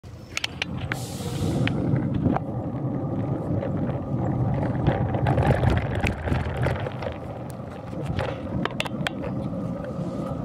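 Rumbling road and wind noise picked up by a handlebar-mounted camera on a bicycle riding over asphalt, scattered with many short sharp clicks and rattles.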